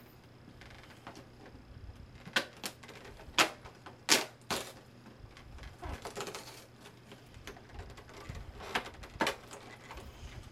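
Sharp plastic clicks and taps, several in a row with gaps between, and a short rustle in the middle: a clear plastic advent calendar case being handled as one of its numbered compartments is opened and the item inside taken out.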